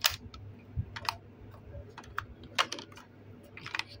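Hard plastic parts of a 2006 My Little Pony playhouse clicking and knocking as a hand works its hinged mailbox and lid open and shut: about six separate sharp clicks, the loudest right at the start.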